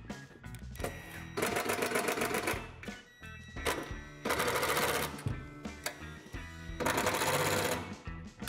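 Cordless impact driver hammering bolts tight through a steel heater mounting bracket in three bursts of about a second each, with short pauses between them. Quiet background music plays underneath.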